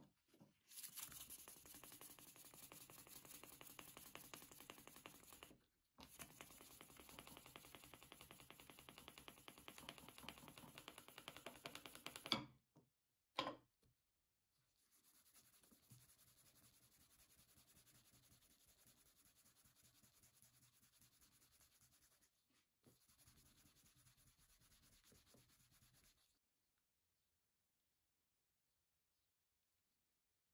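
Fine 2500-grit wet sandpaper rubbed back and forth along a wooden handle in two long runs of quick, even strokes. Two sharp knocks about halfway, then quieter hand rubbing of a thin metal strip on a felt polishing disc coated in white compound, in two runs.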